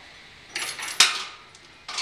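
Brass pinlock latch pin and its chain handled against the stall door hardware: a brief metallic jingle, then a single sharp metal clink about a second in as the pin seats, ringing out briefly.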